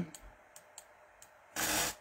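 A few faint, scattered clicks from computer use, then a short loud rush of noise about half a second long near the end.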